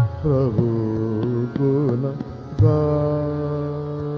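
Hindustani classical music in Raag Basant Mukhari. A slow melodic line glides and bends between notes, then settles on one long held note a little past halfway. A steady drone and a few plucked strikes sound underneath.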